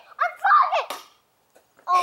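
A short excited vocal exclamation, followed about a second in by a single sharp click, then near silence before another voice starts up near the end.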